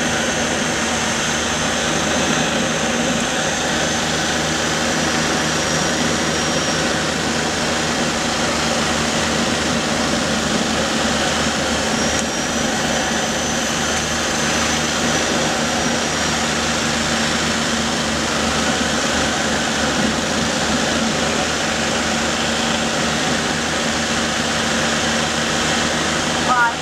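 Steady engine and propeller drone of a small twin-engine airplane on final approach, heard inside the cockpit. A faint high whine fades out and then returns.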